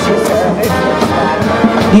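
Marching band playing: brass instruments carrying a tune over steady drum beats.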